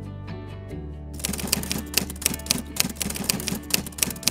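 Typewriter keystroke sound effect, a quick irregular run of clacks starting about a second in, over steady background music.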